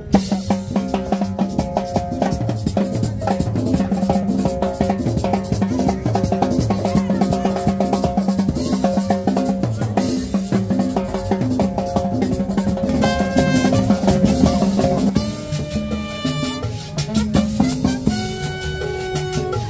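Latin dance music (cumbia) from a band, a drum kit with snare and bass drum keeping a steady beat under a repeating low melody. A higher held melodic line comes in briefly about 13 seconds in and again about 15 seconds in.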